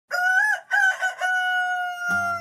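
Rooster crowing: three short rising-and-falling notes, then a long held final note that sags slightly in pitch.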